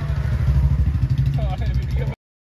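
Low, steady engine and road rumble of a moving goods vehicle, heard from inside its tarpaulin-covered cargo bed, with voices and laughter over it.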